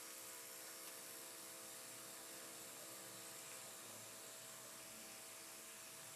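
Near silence: room tone with a faint steady hum and hiss.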